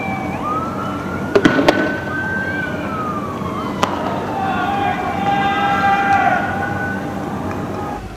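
Police vehicle siren wailing, its pitch sliding slowly up and down. A quick cluster of sharp cracks comes about a second and a half in, and one more near four seconds.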